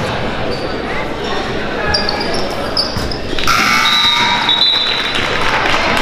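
Basketball bouncing on a hardwood gym floor, several separate bounces, among voices echoing in a large gym. A high, held tone sounds from a little past halfway for nearly two seconds.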